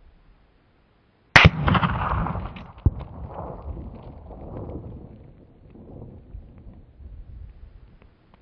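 .204 Ruger rifle firing a single shot about a second and a half in, the report followed by a long rolling echo that fades over several seconds. A second, shorter crack comes about a second and a half after the shot.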